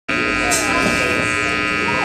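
Steady electrical buzz with many overtones from the stage's amplified rig: plugged-in electric guitars and amplifiers humming while idle, with faint voices in the room.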